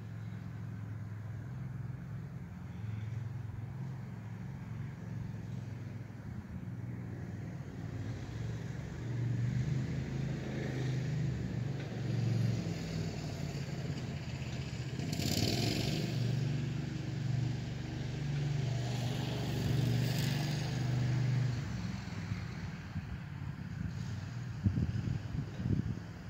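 Landmaster LM650 utility vehicle's 653cc engine running as it drives around out of sight, growing louder in the middle with a brief close pass about fifteen seconds in, then fading back.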